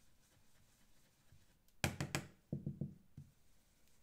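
Quiet work sounds of dye ink being blended through a stencil with a foam blending tool. About two seconds in there is a quick cluster of light taps and knocks, followed by a short breathy chuckle.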